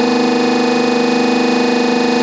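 Hydraulic baling press running, its pump motor giving a loud, steady hum of several tones while it compresses plastic bottles into a bale.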